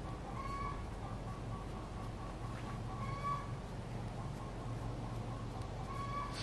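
An animal calling three times: short pitched calls about half a second in, about three seconds in and at the very end, over a steady low hum.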